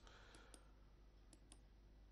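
Near silence: room tone with a few very faint short clicks.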